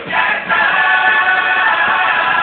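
Carnival group's chorus singing together on stage, getting louder right at the start and settling on a long held chord about half a second in.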